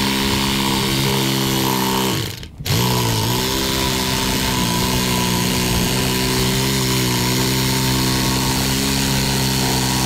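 Electric reciprocating saw running steadily as it cuts through the rubber sidewall of a large, thick tractor tire. About two seconds in it winds down, stops briefly and starts up again.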